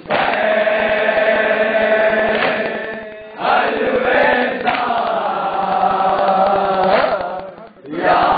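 A group of men chanting a nauha (Muharram lament) together, in long sung phrases with short breaks about three seconds in and near the end, over rhythmic chest-beating (matam).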